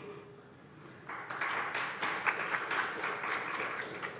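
Audience applauding, beginning about a second in: many hands clapping together.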